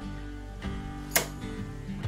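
Background guitar music, with one sharp click a little over a second in: a circuit breaker in the load center being switched on.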